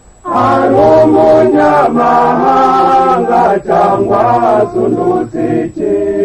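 A chorus of voices singing a Rwandan PARMEHUTU party song. It comes in about a quarter second in after a short pause, with long held notes broken by brief gaps.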